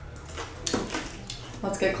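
A few light clinks and knocks as a small glass bowl is set down on a baking sheet.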